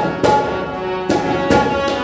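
Harmonium holding sustained reedy notes and chords, with tabla strokes struck over it in an instrumental passage.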